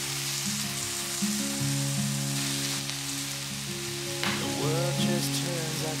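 Pork belly slices sizzling in a nonstick frying pan as a spatula turns them, with a short clack about four seconds in. Background music plays steadily under the sizzle.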